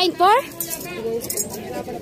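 A man says "four", then several people talk in the background.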